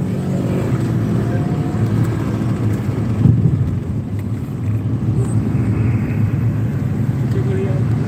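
Steady engine and road noise of a car being driven, heard from inside the cabin.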